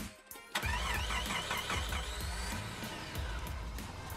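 Car engine starting sound effect: the starter cranks in quick pulses from about half a second in, and the engine catches and runs with a short rising rev, over background music with a steady beat.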